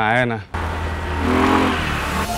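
Street traffic with a motorbike engine running past close by, a steady rushing drone.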